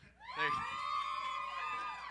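A few voices whooping and cheering together in one drawn-out 'woo', rising at the start, held for about a second and a half, then falling away.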